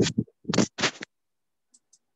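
Three short scratchy rustling noises in quick succession within the first second.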